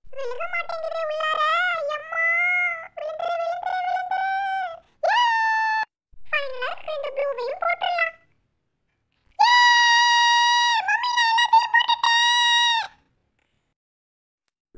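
A high, pitched-up voice, dubbed in as the lovebird's 'mind voice', speaking in short sing-song phrases and twice drawing out a long steady note, the second one held for about three seconds, with clean silent gaps between the phrases.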